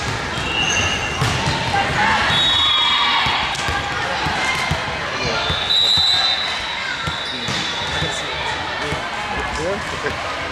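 Busy sports-hall ambience at a volleyball tournament: voices of players and spectators mixed with balls bouncing and being struck on the courts, giving many short sharp knocks, with a few brief high-pitched tones in the echoing hall.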